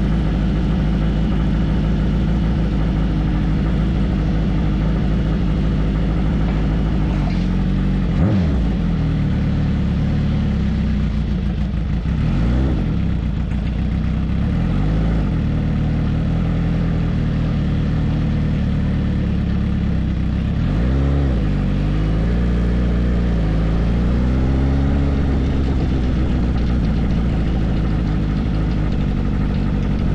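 Kawasaki ZX-10R 998 cc inline-four motorcycle engine running at idle, then rising and falling in pitch several times as the bike pulls away and rides off slowly.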